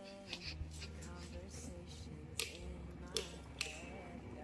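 Wall light switches clicking as they are flicked on in the dark: three sharp clicks in the second half.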